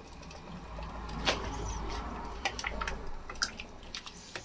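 Watery beef stew being stirred with a metal spoon in a stainless steel stockpot: a liquid sloshing sound that swells through the middle, with a few sharp clinks of the spoon against the pot.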